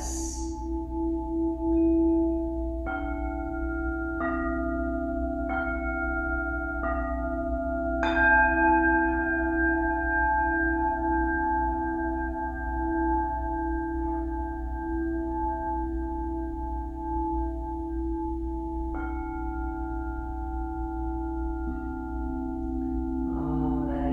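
Crystal singing bowls ringing in a sustained, wavering hum. Fresh strikes on the bowls add new tones about every second and a half from about three seconds in, with a louder strike about eight seconds in and another near the end.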